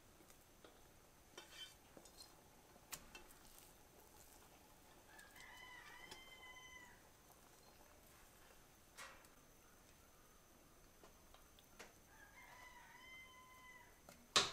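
Near silence, with a few faint clicks from a bowl and wooden spoon at the stove pots, and two faint drawn-out calls from an animal, one about five seconds in and one near the end.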